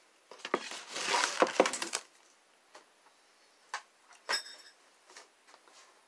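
Items being picked up off a wooden dresser top and set down: a jumbled clatter of knocks through the first two seconds, then a few separate knocks and taps, one of them a short ringing clink a little past the middle.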